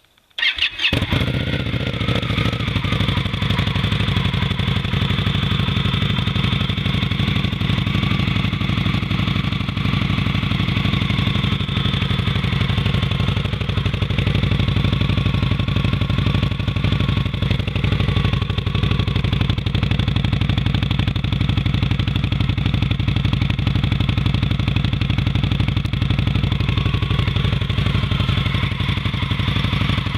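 A 2015 Indian Scout's liquid-cooled 1133 cc V-twin running through Indian Stage 1 slip-on mufflers: it starts and catches about half a second in, then idles steadily.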